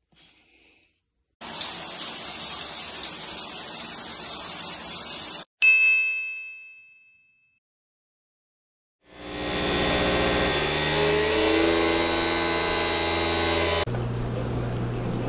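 Shower water running steadily for about four seconds and cutting off abruptly, then a single bright chime that rings out and fades over about two seconds. Music starts about nine seconds in.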